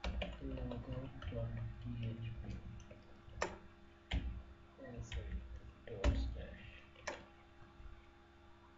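Irregular sharp clicks and knocks from a computer keyboard and mouse as a file name is typed into code, several of them louder and heavier, with faint indistinct voice-like sound beneath.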